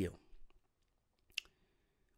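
A man's word trails off at the start into a close microphone. Then comes a quiet pause broken by a single short, sharp click a little past the middle.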